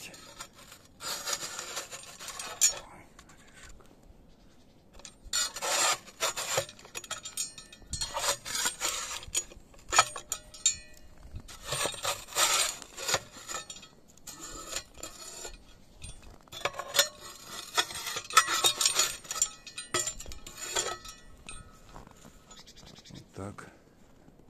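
Small metal shovel scraping snow off a wooden feeder board, in about six bouts of rasping strokes with short pauses between.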